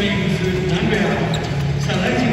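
Arena public-address sound: an amplified voice over background music, filling the hall at a steady level.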